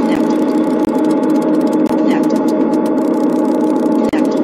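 Live-coded electronic music from TidalCycles and SuperCollider: rapid synthesized hi-hat ticks over a dense, steady drone, with a short sampled sound that rises in pitch coming back about every two seconds.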